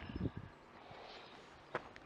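Feather rustling and a few low thumps in the first half second as a dead wild turkey gobbler is handled and its tail fanned out, with a single sharp click near the end; otherwise faint.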